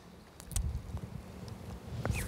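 Low, irregular rumbling noise that comes in about half a second in, with a single click at its start.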